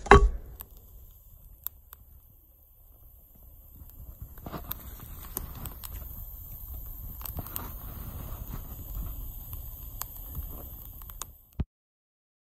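A single loud knock of a hatchet striking wood at the very start. From about four seconds in, a small fire of bark and twigs crackles with scattered sharp pops, then the sound cuts off abruptly just before the end.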